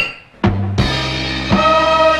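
Orchestral pop music starting about half a second in: drum-kit strokes over held chords from a full band with brass, the intro of a 1978 festival song in an archival broadcast recording.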